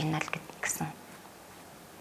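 A woman's voice speaking for about the first second, then trailing off into a pause of quiet room tone.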